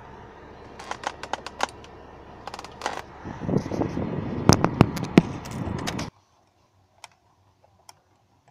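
Irregular plastic clicks and knocks with rustling handling noise in a car's interior, the loudest knocks a little after four seconds in. All sound cuts off abruptly about six seconds in, leaving only a couple of faint clicks.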